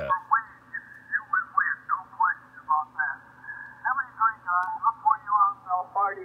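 A man's single-sideband voice received on the 40-metre amateur band through a Yaesu FTdx5000MP transceiver with its DSP width narrowed to 1.1 kHz to shut out a neighbouring station 2 kHz away: thin, tinny speech squeezed into a narrow band, still understandable, over a steady low hum.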